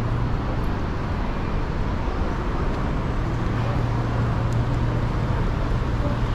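Steady road traffic along a city street, with a continuous low hum under it.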